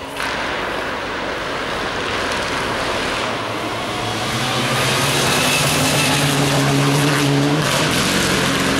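Mitsubishi Lancer Evolution rally car approaching at speed on a gravel stage, tyres crunching over the loose surface. Its engine note grows louder and climbs from about halfway through, then breaks off suddenly just before the end.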